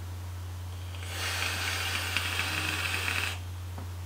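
A long draw of about two seconds on a dual-coil rebuildable dripping atomizer (Tauren RDA) with honeycomb airflow: an even hiss of air and vapour that starts about a second in and stops sharply a little after three seconds, over a steady low hum.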